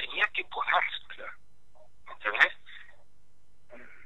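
Speech over a telephone line, thin and narrow-sounding: a stretch of talk in the first second or so, then a short phrase and a brief pause before more words near the end.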